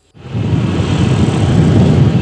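Road traffic with motorcycles passing: a loud, steady rumble of engines and road noise that starts just after a brief gap.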